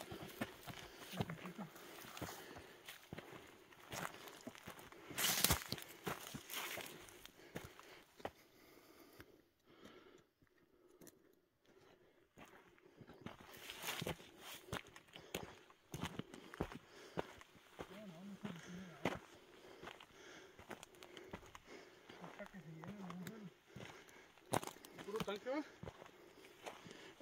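Footsteps crunching over dry gravelly dirt and through dry brush, with scattered twig and brush crackles and a few faint words; it goes quieter for a few seconds around ten seconds in.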